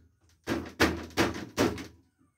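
Pliers tapping a rubber seal down into a drilled hole in a PVC pipe to seat it tight, so the drip-line fitting won't leak: four quick knocks, about 0.4 s apart.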